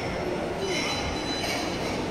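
Busy shopping-mall background hubbub, with a brief high-pitched squeal of several steady tones near the middle.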